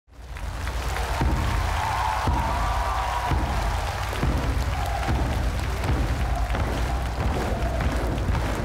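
Massed large Chinese drums played in a dense, rumbling rolling beat, with accented strikes about once a second. It comes in suddenly out of silence.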